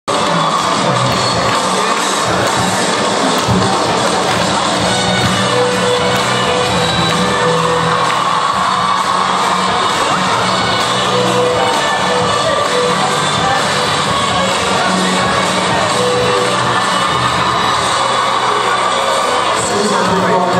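Music playing under the loud, steady noise of a large crowd in a hall, with cheering mixed in.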